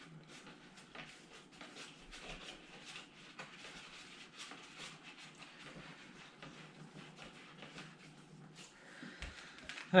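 Faint handling noise: scattered light clicks and rustles of a motocross helmet and its packaging being moved about.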